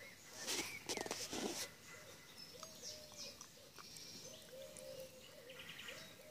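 Woodland birdsong: a low call repeated over and over, with scattered higher chirps above it. A short burst of noise comes in the first second or two.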